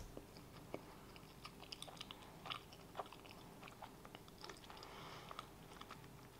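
Faint chewing of a mouthful of strawberry-topped pastry: scattered small mouth clicks, with no words.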